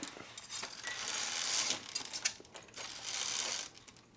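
Curtain being drawn open along its rail, the metal runners sliding and clinking in two long sweeps.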